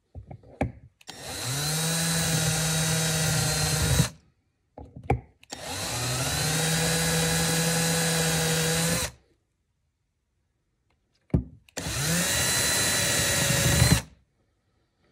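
Hand drill running in three bursts of about three seconds each, each time spinning up to a steady whine. It is driving a solid carbide No. 11 drill bit that cuts gas-block dimples into a nitrided AR barrel through a dimple jig. Short clicks come between the bursts.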